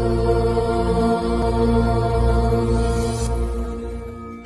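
Devotional intro music: a chanted mantra over steady held drone tones, fading out near the end.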